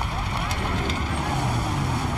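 Car engines running under a crowd of people shouting over one another.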